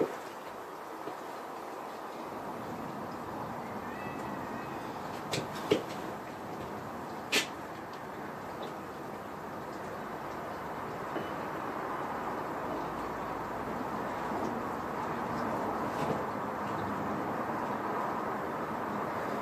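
A few short, sharp knocks and clinks of metal engine parts being handled on a V8 block during assembly, the loudest about seven seconds in, over steady outdoor background hiss.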